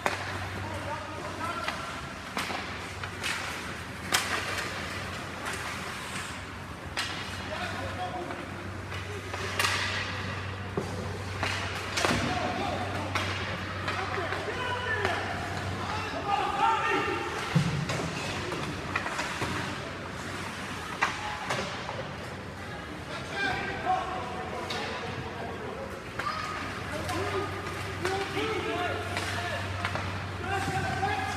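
Youth ice hockey game in an indoor rink: indistinct spectators' voices and shouts, with scattered sharp knocks of sticks and puck on the ice and boards, over a steady low hum that drops out for about ten seconds in the middle.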